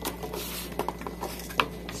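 Plastic screw-in lamp sockets with wire leads being handled and set down, giving a few light clicks and knocks.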